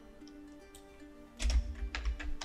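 Soft background music with sustained mellow notes. About one and a half seconds in, a short cluster of clicks with low thumps, from computer mouse and keyboard use.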